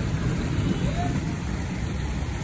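Steady low rumble of outdoor street noise, with a faint voice briefly about a second in.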